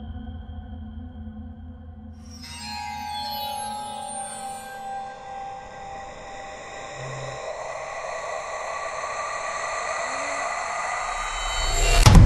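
Ambient synth background music made of held tones. About two seconds in, a falling sweep of pitches comes through, and the music slowly swells louder toward the end.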